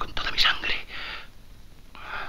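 Heavy, breathy gasps from a person in a close struggle: a few quick breaths in the first second, then quieter breathing.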